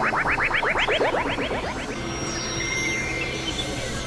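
Layered experimental electronic music. A fast train of short upward-sweeping chirps, about nine a second, runs over a low drone and stops about two seconds in. A held high tone and a falling sweep follow.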